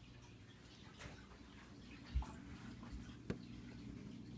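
Faint handling sounds of moving a small snake out of a plastic rack tub: a short low thump about two seconds in and a sharp click a second later, over a steady low hum.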